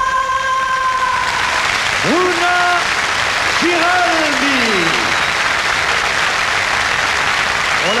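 Studio audience applauding loudly after a song, its final held note fading out in the first second. Two long shouts rise above the clapping a couple of seconds in.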